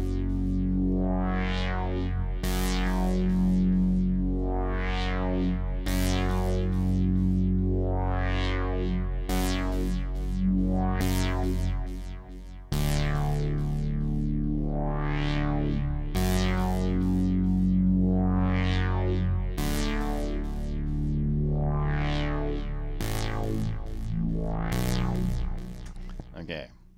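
Spire software synthesizer playing a sequenced pad with held low chord notes under it, the layer added for more low end. A filter opens and closes on it roughly every one and a half seconds, giving a rhythmic rising-and-falling sweep. The sound drops out briefly about halfway through, then comes back on a new chord.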